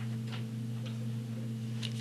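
A steady low electrical hum in the room, with a few faint ticks.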